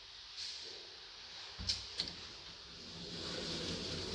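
Quiet inside a lift cabin: two light clicks about a second and a half in, then a low steady hum that grows toward the end as the automatic doors begin to close.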